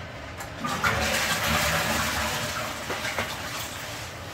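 Toilet flushing: a sudden rush of water about a second in that gradually dies away over the next couple of seconds.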